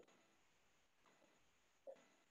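Near silence: faint room tone, broken by a brief faint blip at the start and another near the end.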